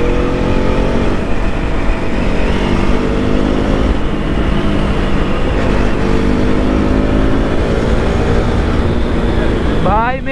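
KTM RC 200's single-cylinder engine running steadily under way, its note drifting gently up and down, with wind rumbling on the microphone.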